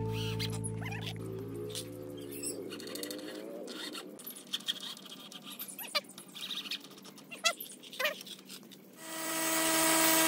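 Scattered quiet knocks and clicks of hand work on timber, after a steady tone fades out over the first few seconds. About nine seconds in, the motor of a combination jointer-planer starts, rises quickly to speed and runs steadily.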